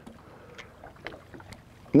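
Faint water sounds at the side of an aluminum fishing boat, with a few small ticks and knocks.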